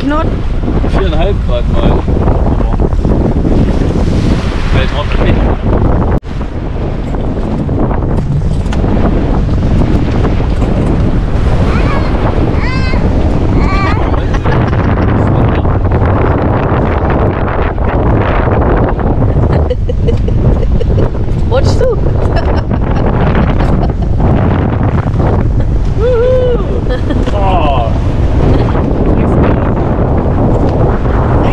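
Strong wind buffeting the microphone aboard a small sailboat under sail, over the rush of choppy water and the wake along the hull. There is a brief break in the noise about six seconds in.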